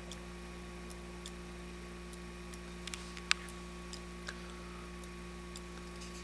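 Homemade reed-switch electromagnet motor running: irregular sharp ticks about twice a second, with one louder click a little past halfway, over a steady electrical hum.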